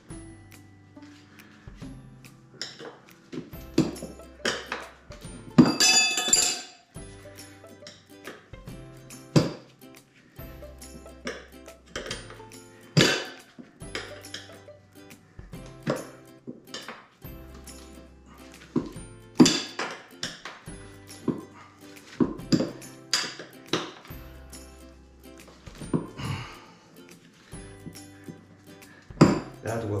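Background music with a steady bass line. Over it come repeated sharp metal clinks of tire levers against a spoked motorcycle wheel rim as a knobby tire is levered onto it. A longer, louder clatter comes about six seconds in.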